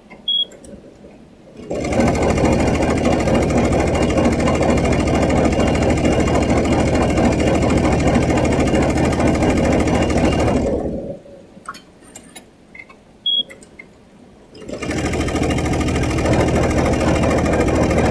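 Multi-needle commercial embroidery machine stitching at speed, a fast, even chatter. It starts about two seconds in, stops for roughly four seconds past the middle, and starts again. During the pauses there are light clicks and a short high beep.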